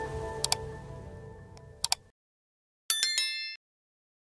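Channel intro jingle music fading out, with two quick pairs of sharp clicks about half a second and just under two seconds in. A brief, high chime of several tones sounds near three seconds in.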